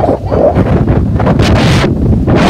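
Strong cyclone wind buffeting the phone's microphone in a continuous low rumble, with a louder rushing gust about a second and a half in.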